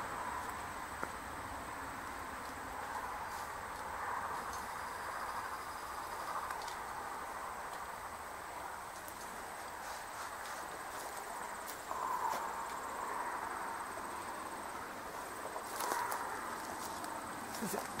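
Rural outdoor ambience: steady insect noise with a thin high continuous tone, and a few faint ticks.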